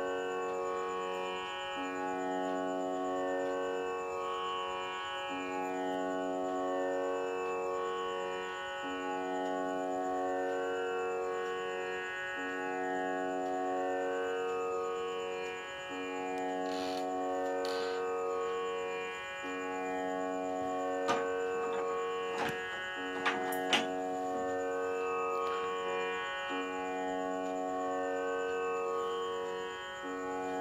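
Tanpura drone with no voice over it: the same set of sustained string tones sounds again and again in a cycle of about three and a half seconds. A few sharp clicks come about two-thirds of the way through.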